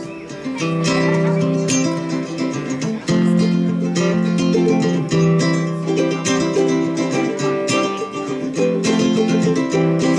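Live acoustic plucked-string band playing the instrumental intro to a country song, strummed and picked notes in a steady rhythm over a held low note.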